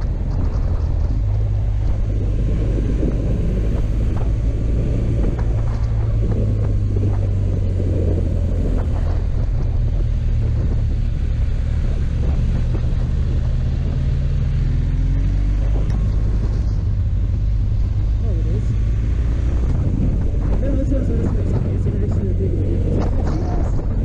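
Motorcycle engine running steadily under way, a loud low drone, with the engine note shifting about halfway through as the revs change.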